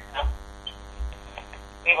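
Steady electrical hum with many evenly spaced overtones on a telephone conference line, with two soft low thumps about a quarter second and a second in.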